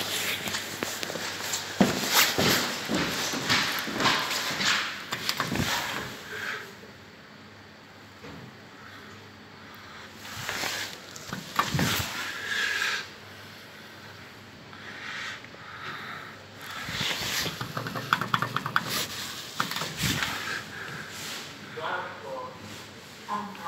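Rubbing and rustling of a phone being handled close to its microphone, in irregular bursts with short quieter gaps.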